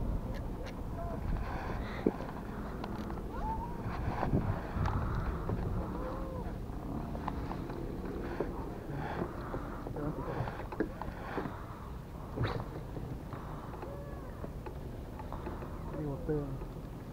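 Outdoor pond ambience: a steady low rumble of wind on the microphone, with short animal calls scattered throughout. A few sharp knocks and clicks from the fishing gear, the loudest about two seconds in and again near twelve seconds, come as a baitcasting rod is cast and retrieved.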